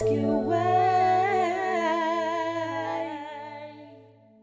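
The song's final note: a voice holds a long note with vibrato over a sustained low chord, and the music fades out near the end.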